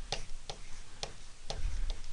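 Light, sharp ticks at a fairly even pace of about two a second.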